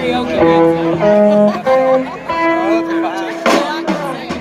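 Electric blues guitar solo over a live band, heard through an outdoor PA: held, bent notes sliding between pitches. A brief loud crash near the end.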